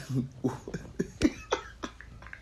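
A man coughing: a run of short, sharp coughs with his hand over his mouth.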